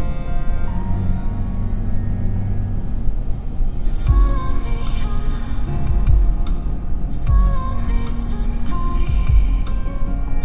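An electronic music track playing through a 2006 Toyota 4Runner's stock six-speaker audio system, heard inside the cabin while driving. Deep bass hits come in about four seconds in, roughly one a second.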